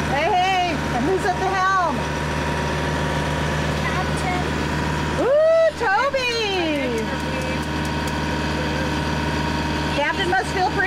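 Sailboat's inboard auxiliary engine running steadily under way as the boat motors, a constant low hum. A woman's voice twice breaks in with drawn-out, sliding wordless calls, near the start and again about five seconds in.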